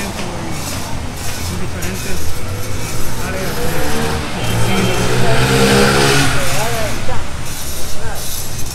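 A motor vehicle passing close by in the street, its engine note swelling to loudest about six seconds in and then falling away, with people's voices in the background.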